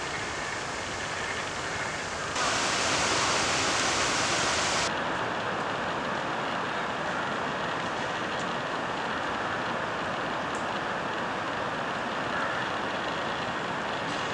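A steady rushing noise with no distinct events. It turns abruptly brighter and louder a little over two seconds in, then cuts back about two and a half seconds later to a slightly different steady hiss.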